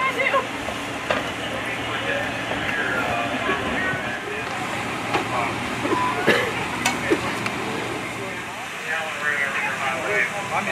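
Indistinct background voices over a steady rumble, with a couple of sharp clicks past the middle.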